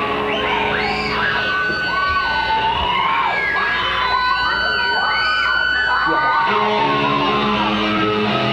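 1980s hard rock band playing: electric guitars holding notes while repeated wailing bends of pitch rise and fall over them, then a chugging guitar riff kicks in about six and a half seconds in.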